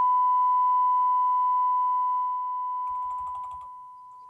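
Steady electronic reference tone from a broadcast holding slate: a single pure beep-like note that fades gradually, with a few faint clicks about three seconds in.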